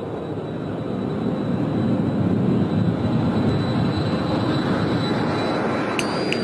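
Electric rotary polisher with a buffing pad running against a car's painted body panel: a steady whirring rush with a faint thin high whine, growing louder over the first couple of seconds.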